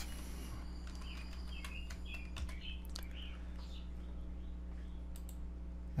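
Typing on a computer keyboard: scattered key clicks, over a steady low electrical hum.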